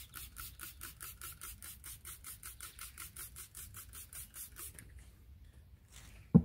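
Hand trigger spray bottle squirting distilled water onto an orange foam polishing pad: a fast, even run of short hissing sprays, about five a second, that stops abruptly near the end. The pad is being soaked before machine polishing.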